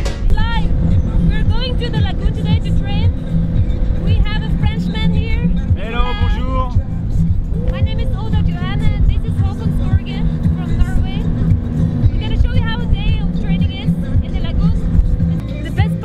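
A dune buggy driving over sand, its engine running as a steady low rumble under music and people talking.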